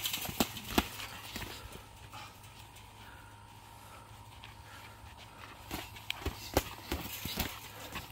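Boxing sparring on a dirt floor: short knocks of gloved punches and quick footsteps, a cluster in the first second and another from about six to seven and a half seconds in, quieter in between.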